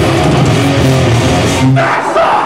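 Metallic hardcore band playing live in a club: loud distorted electric guitars, bass and pounding drums. Near the end the cymbals drop out briefly while the guitars ring on.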